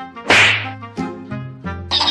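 A sharp whip-crack sound effect about a third of a second in, over background music.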